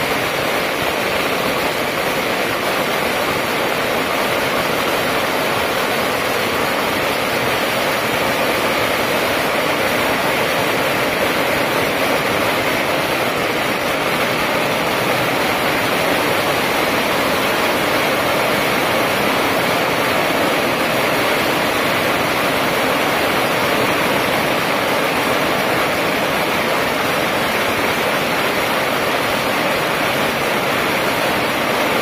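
A long string of firecrackers going off without pause, the bangs so rapid that they merge into one dense, steady crackle.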